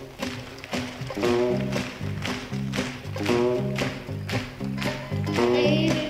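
Live country band playing an upbeat instrumental passage, with a steady drumbeat, bass notes and guitar lines.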